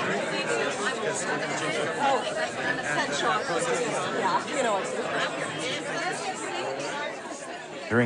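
A man talking face to face with another, answering his question, over the chatter of a crowd in a packed hall.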